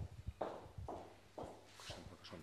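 Footsteps crossing a tiled floor, faint, at about two steps a second.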